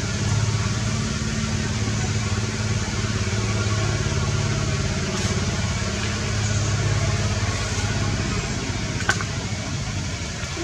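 A motor running steadily with a low, even hum, and a single sharp click about nine seconds in.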